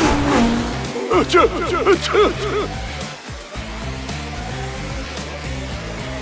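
Cartoon race-car sound effects: engines whine past in a quick series of rising-and-falling pitch sweeps during the first three seconds, over steady background music that carries on alone afterwards.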